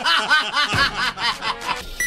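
A person laughing in a quick run of short 'ha' pulses, about five a second, trailing off near the end.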